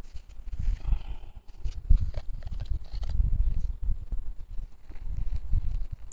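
Uneven low rumbling and buffeting on a clip-on microphone, with a few faint knocks and rustles as soil and plastic pots are handled.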